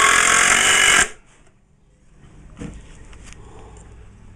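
DeWalt 20-volt cordless impact driver hammering a quarter-inch star-drive screw into a hardwood hive bottom board. It stops suddenly about a second in, and a light knock follows a little later.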